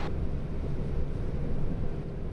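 Steady low outdoor rumble with wind buffeting the microphone, with no distinct events.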